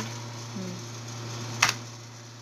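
Computer keyboard key pressed once, a sharp click near the end, committing a typed spreadsheet formula, over a steady low hum.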